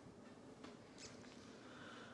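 Near silence: room tone, with a couple of faint, brief ticks about a second in.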